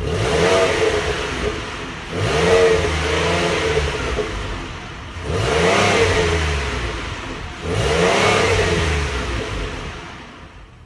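2015 Ford Explorer Limited's 3.5-litre V6 is revved four times through its dual exhaust. Each rev rises in pitch and falls back toward idle, and the engine settles near the end.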